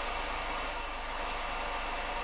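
Steady background hiss with a low hum beneath it and a few faint steady tones. Nothing starts or stops.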